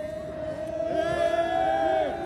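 A woman's voice drawing out the word "I" into one long held vowel through a PA microphone, a hesitation before the next words. It holds one steady pitch with a slight waver and grows gradually louder.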